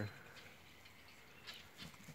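Near silence: faint outdoor background with two soft ticks near the end.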